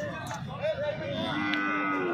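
Cattle mooing at a livestock market: a steady, held moo starts about a second and a half in, over faint background market noise.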